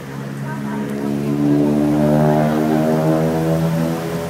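An engine running close by at a steady pitch, growing louder over the first second and a half and then holding loud.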